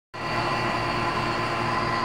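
Refrigeration vacuum pump running steadily, a constant motor hum with a high whine, pulling a vacuum on a split air conditioner's refrigerant lines to clear out air that got in through a leak.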